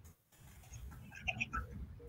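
Faint open-microphone background on a video call: a low rumble with a few small, scattered ticks in the second half.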